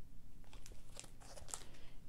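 Clear plastic pattern sleeve crinkling as a cross-stitch chart is handled and set down: a scatter of light crackles.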